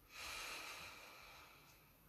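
A person's slow, deep breath, heard as a soft rush of air that swells just after the start and fades away over about a second and a half. It is one round of paced belly breathing.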